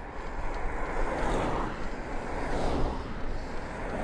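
Wind rushing over the microphone, with steady low buffeting, and tyre noise from a Trek Checkpoint ALR 5 gravel bike riding at about 16 mph on wet tarmac. Oncoming traffic swells past twice.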